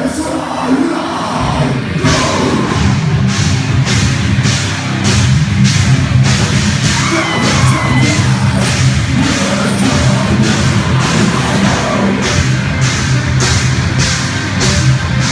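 Live heavy rock band playing loud: distorted guitars, drum kit with regular cymbal hits about twice a second, and shouted vocals. The full band comes in hard about two seconds in.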